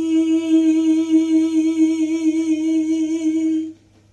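A woman's voice holding one long, level sung note on the closing word "gì", sustaining its final "i" vowel as a demonstration of drawing out an i-ending when singing. The note stops abruptly near the end.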